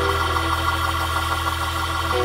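Organ holding steady sustained chords over a deep bass note.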